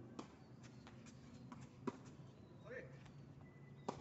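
Tennis ball struck by rackets and bouncing on a hard court during a rally: a few sharp pops about two seconds apart, the loudest about two seconds in, with faint distant voices.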